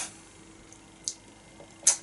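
A pause in speech: quiet room tone with a faint steady hum, a small click about a second in, and a sharper click just before the voice comes back.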